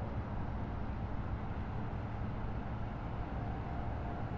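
An engine running steadily, a constant low rumble with no change in speed.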